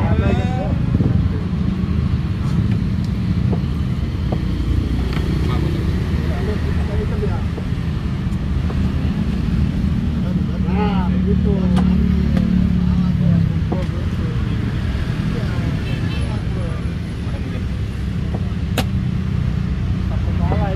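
A steady low rumble with voices talking now and then, and a few sharp clicks of play at the chess board.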